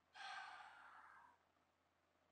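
A man's faint sigh: one breathy exhale of about a second that fades out.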